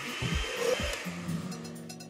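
Countertop blender whirring for about a second and a half, then fading out, as a cartoon sound effect over background music.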